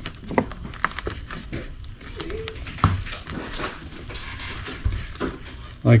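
Gloved hands handling a tennis ball and pushing synthetic rope through a slit cut in it, making scattered small clicks and rustles, with a brief pitched whine about two seconds in.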